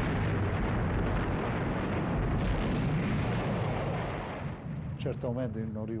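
Bombs exploding in a dense, continuous low rumble that fades out after about four and a half seconds.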